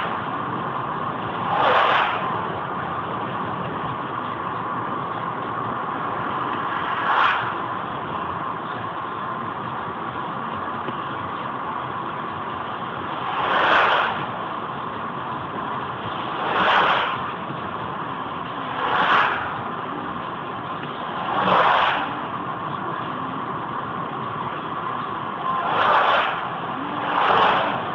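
Steady road and tyre noise inside a moving car, picked up by a dashcam, with a swelling whoosh each time a lorry or other vehicle goes by, about seven times.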